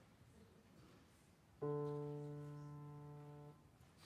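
Steinway grand piano: a single chord struck about halfway through, ringing and fading for about two seconds before it is damped off abruptly.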